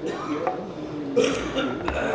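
Indistinct voices of several people talking in the chamber, with a short hissing burst about a second in and a few faint clicks.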